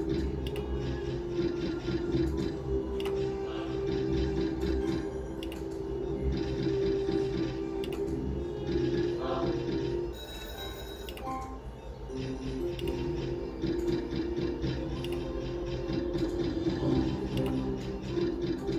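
Book of Ra Deluxe slot machine's free-game music and reel sounds playing steadily. A short burst of high tones sounds about ten seconds in, as a line win is paid.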